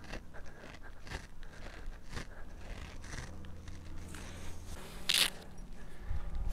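Faint footsteps and rustling as a golfer walks across short grass, with one sharper brushing scrape about five seconds in.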